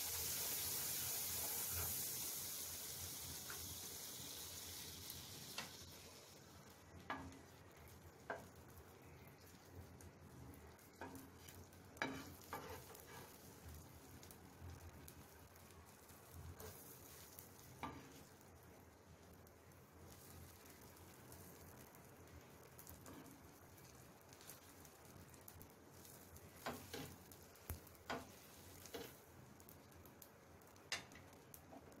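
Butter sizzling on a hot flat tawa as pav bread toasts in it, loudest in the first few seconds as fresh butter hits the pan, then dying down to a faint sizzle. A scattering of light taps from a wooden spatula on the pan.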